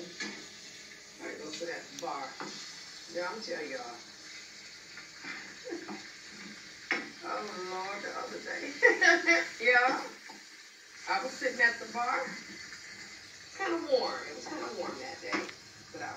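Speech played through a television's speaker, in bursts with short pauses.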